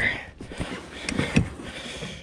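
A few light knocks and rustles as a landing net holding a fish is handled against a plastic kayak, the sharpest knock about one and a half seconds in.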